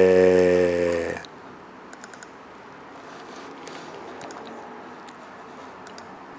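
A man's drawn-out hesitation sound "eh" at a steady pitch for about the first second, then a few faint clicks from a laptop keyboard as the presentation slides are advanced.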